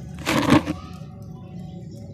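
A soaked sand-and-cement block crumbling and slumping under poured muddy water: one short crunchy, crackling burst about a quarter second in, lasting about half a second.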